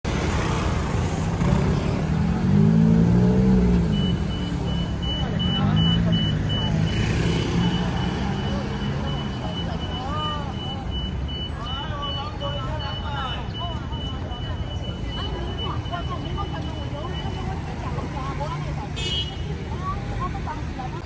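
Busy street traffic: motor scooters and cars pass, with engines loudest in the first few seconds. People talk nearby, and a thin, steady high tone sounds through the middle stretch.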